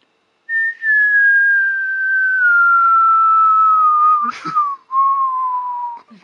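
A person whistling one long, slowly falling tone, the descending 'whistling airplane' that goes with a finger gliding in to land on a baby's nose. The whistle breaks briefly a little after four seconds in, then resumes lower and keeps falling.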